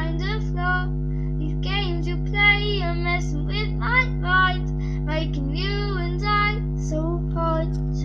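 A young girl singing a pop song cover in a run of short phrases with bending, held notes, over a steady low hum.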